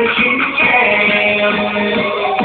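Vietnamese pop song played loud, with a long held note starting about half a second in.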